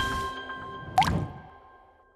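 Intro theme music fading out on held notes, with a single quick upward-sweeping sound effect about halfway through, the loudest moment, as the channel logo appears.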